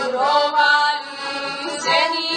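Heligonka, a Slovak diatonic button accordion, playing a folk tune with sustained chords, with a voice singing along.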